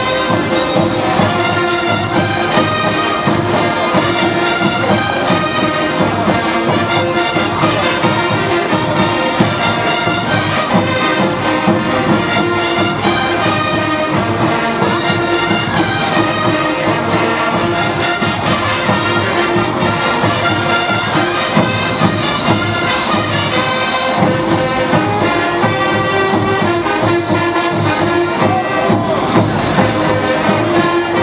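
Brass band playing caporales dance music, with a steady drum beat.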